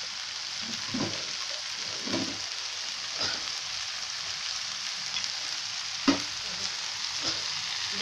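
Shredded cabbage and potatoes sizzling steadily in a frying pan on the gas flame, with a few soft knocks against the pan, the clearest about six seconds in.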